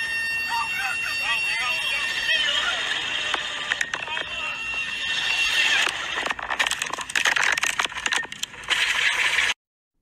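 Audio of a helicopter crash recorded from inside the cabin: screaming voices over a steady, high-pitched warning alarm, then about six seconds in, harsh crackling, distorted noise bursts that cut off abruptly just before the end.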